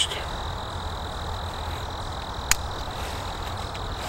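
A single sharp metallic click about halfway through, as the Beretta 21A's tip-up barrel is snapped shut on a round dropped straight into the chamber. A few faint handling ticks follow near the end, over a steady low background rumble.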